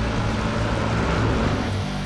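Armoured tornado intercept vehicle driving past on a highway: engine hum and road noise swelling to a peak about a second and a half in.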